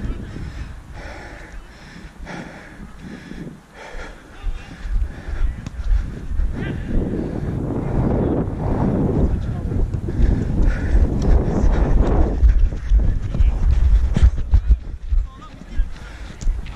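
Rumbling wind and movement noise on a body-worn action camera as its wearer moves about the pitch, heavier in the second half, with shouts from players.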